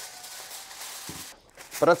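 A sheet of aluminium foil rustling faintly as it is spread over a baking tray. The sound cuts off about a second and a half in, and a man starts speaking near the end.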